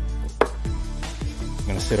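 A single sharp click about half a second in, from the plastic headlight assembly and its wiring connector being handled, over background music.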